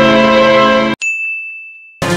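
A held chord of dramatic film music cuts off abruptly about a second in, followed by a single high ding that rings on and fades away.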